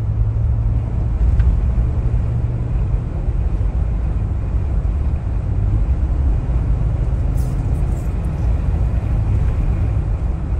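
Steady low rumble of a car driving along a multi-lane road: engine and tyre noise at cruising speed, with a couple of faint high ticks.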